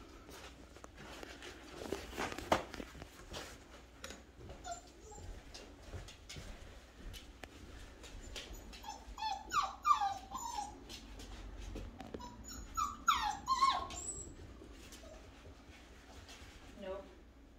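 Goldendoodle puppy whimpering in two short bouts of high, falling whines, about nine and thirteen seconds in. Light ticks and knocks come in the first few seconds.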